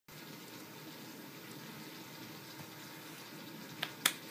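Faint steady hiss of room tone picked up by a webcam microphone, with one sharp click shortly before the end.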